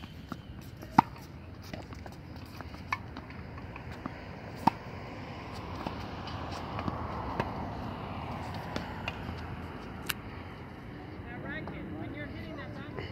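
Tennis balls being hit by rackets and bouncing on a hard court: a few sharp, isolated pops, the loudest about a second in and others near three seconds and just before five seconds, over a steady outdoor background.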